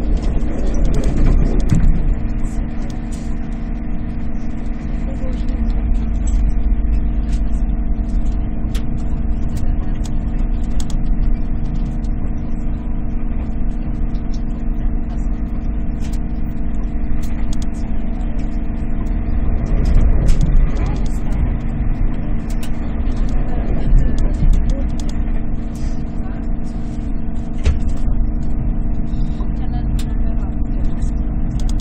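SJ X2000 high-speed electric train heard from inside the carriage while running at speed: a steady low rumble with several constant hum tones and frequent light clicks and rattles.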